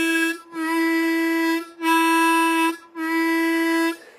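Blues harmonica playing the same single note four times, each held about a second with short breaks between. The note is played tongue-blocked, with the harp pushed deep into the mouth, to show the warmer tone that technique gives.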